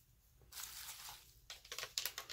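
Faint rustling, then several light clicks near the end, as a small eyeshadow palette is handled.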